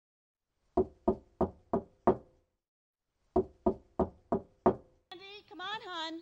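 Someone knocking on a door: five quick knocks, a pause of about a second, then five more, before a woman's voice calls out.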